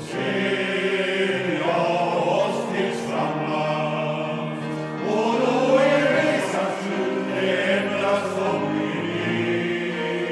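Men's choir singing in harmony, holding slow sustained chords. The voices enter together at full voice right at the start.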